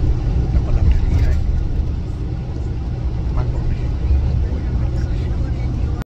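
Steady low rumble of a coach bus heard from inside the passenger cabin, with faint voices in the background.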